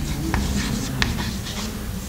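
Chalk writing on a blackboard: light scratching, broken by a few sharp taps as the chalk strikes the board.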